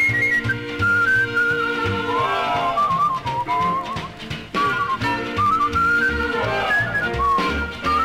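Song's instrumental break: a whistled melody over sustained chords, a walking bass and a steady beat.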